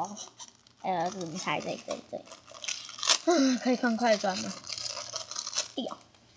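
Mostly a woman's voice talking, with the clear plastic bags of squishy bread toys crinkling as they are handled, loudest between her phrases a little past the middle.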